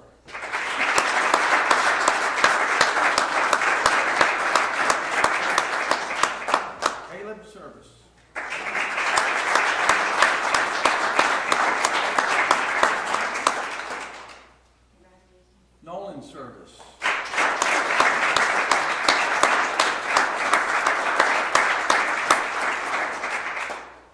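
Audience applauding in three rounds of about six seconds each, with short pauses between them.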